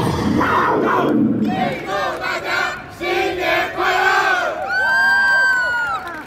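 A cheerleading squad shouting a cheer together in unison: several short chanted phrases, then one long held call near the end.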